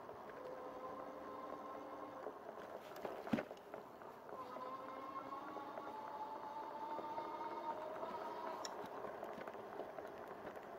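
Electric hub motor of a Rad Power Bikes RadMini Step-Thru e-bike whining faintly under throttle. The tone rises slightly in pitch in the second half as the bike picks up speed, over tyre and wind noise. There is a single knock about three seconds in.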